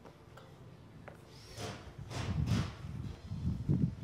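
Wind buffeting the microphone: a low, irregular rumble that starts about a second and a half in and grows louder, with a few sharper gusts.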